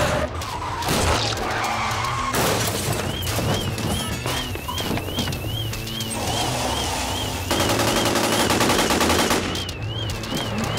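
Gunfire from a TV crime drama's soundtrack over a low music bed, with a high warbling tone from about three seconds in; a dense volley of rapid shots comes near the end.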